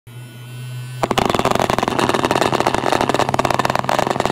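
Little Rooster vibrating alarm's motor humming steadily, then from about a second in a loud, rapid rattling buzz.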